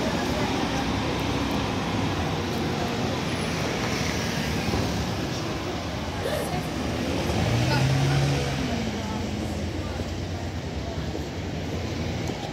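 Street traffic: a steady hum of cars and a bus going by, with passers-by talking, swelling loudest about eight seconds in.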